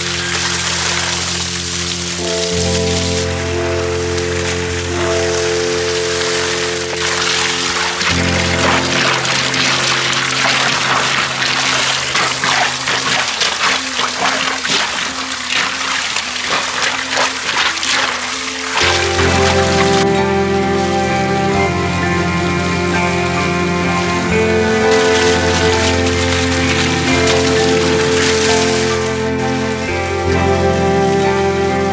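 Background instrumental music, with water gushing from a hose and splashing onto rocks and gravel. The splashing is strongest for the first two-thirds and fainter after that.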